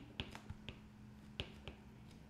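Stylus tips clicking against a tablet screen while handwriting: a handful of faint, sharp ticks at irregular intervals over a faint steady hum.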